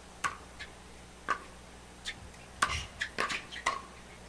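Pickleball rally: paddles hitting the hard plastic ball with sharp pops. A few single hits come about a second apart, then a quick flurry of hits near the end as the players volley at the net.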